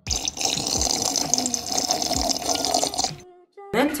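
Water sloshing in a plastic water bottle as a person drinks from it, with repeated gulps, stopping about three seconds in.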